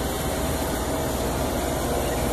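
Rooftop air-conditioning unit running: a steady mechanical hum with a faint constant tone.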